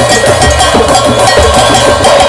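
Drum circle: many hand drums played together in a fast, dense rhythm, with deep bass beats pulsing underneath, loud and without a break.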